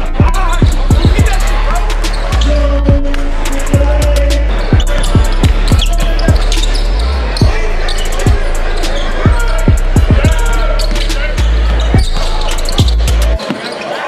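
Hip-hop music track with deep bass notes, sharp drum hits and a rap vocal. The bass cuts out briefly near the end.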